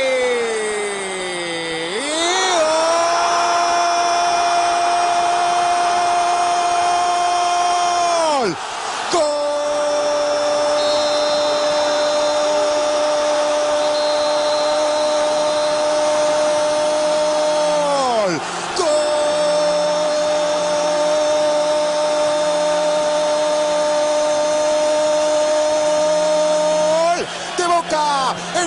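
A football commentator's long held goal cry, "goooool", in three breaths of about six to nine seconds each, each held on one high steady pitch and dropping off sharply at the end, over crowd noise.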